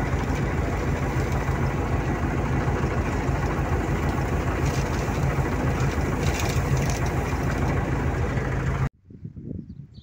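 Combine harvester running steadily while its unloading auger pours wheat into a trailer. The sound cuts off abruptly near the end, leaving a much quieter background.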